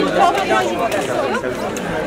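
Several people talking over one another at once: indistinct group chatter.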